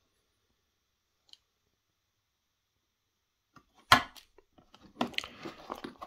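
Dremel accessories being handled in their foam-lined case: one sharp clack about four seconds in, as the metal circle-cutter attachment is set down, then a second of clattering and rustling as a clear plastic accessory box is picked up.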